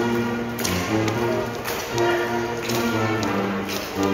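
A pipe-and-drum band playing a tune: held melodic notes over rapid snare and drum strikes, with brass joining in.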